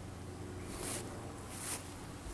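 Faint rustle of black ankle boots stepping on grass: two soft brushes about a second apart, over low steady background noise.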